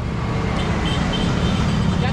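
A vehicle engine running steadily close by, a continuous low rumble.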